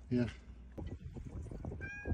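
A cat starts a short high meow near the end, over scattered light clicks and knocks.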